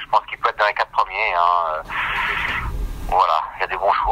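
Only speech: a man talking in French.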